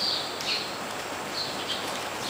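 Small birds chirping a few times, short high chirps over a steady background hiss.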